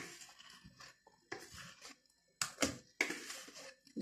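Quiet handling sounds as cake batter is poured from a plastic mixing bowl into a round metal cake pan, with a few short soft knocks a little past halfway.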